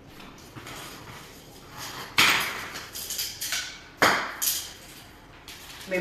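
Handling noises: objects being set down and a jump rope being picked up and moved, with two sharper knocks about two and four seconds in and a few lighter ones.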